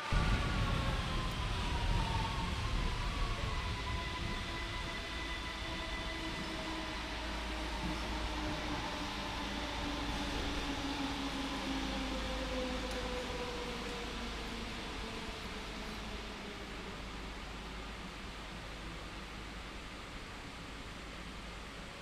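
ÖBB class 4020 S-Bahn electric multiple unit slowing into a station: a whine of several tones falling steadily in pitch over about fifteen seconds, over a low running rumble that fades gradually.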